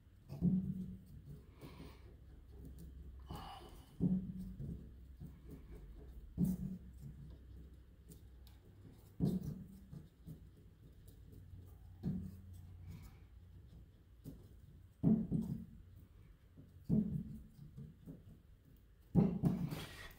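Wooden hammer shafts of a Steinway grand piano action being flexed up and down by hand to work their tight flange hinges loose: a soft knock every two to three seconds, with faint light clicking in between.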